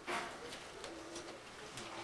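A bird calling faintly in the background, a few soft low notes.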